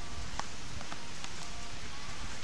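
Steady hiss of surf and wind on the beach, with a few faint sharp clicks scattered through it.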